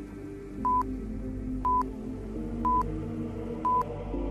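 Workout countdown-timer beeps: four short high beeps, one a second, counting down the last seconds of a rest period, over steady background music.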